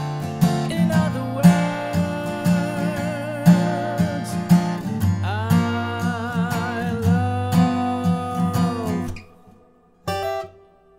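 Steel-string acoustic guitar strumming chords at about two strokes a second, under a melody note held with vibrato over the second half. The music stops short about nine seconds in.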